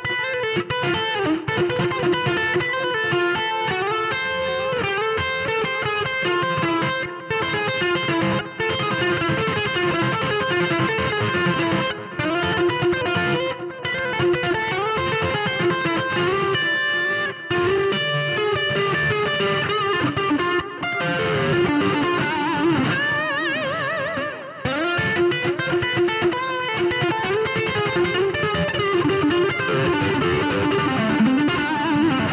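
Distorted electric guitar, tuned a whole step down, playing a fast hybrid-picked (chicken pickin) blues lick in E minor pentatonic with chromatic passing notes. The notes run on with brief breaks, and a stretch of wide vibrato on held notes comes about two-thirds of the way through.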